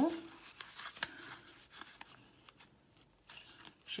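Small paper swatch cards rustling and clicking against each other as they are sorted through by hand, with a quieter stretch in the middle. Near the end, fingers work at two swatch cards that have stuck together.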